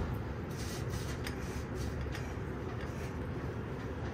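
A steady low background rumble, with a few faint clicks and rubs from hookah parts being handled.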